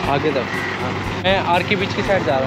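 Voices talking over the steady low rumble of a motorcycle engine running nearby.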